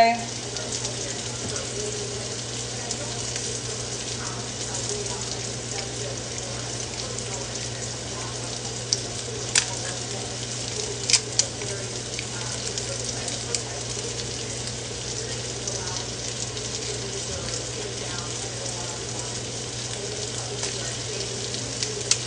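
Italian turkey sausages frying in a pan, a steady sizzle over a low hum, with a few sharp clicks about halfway through.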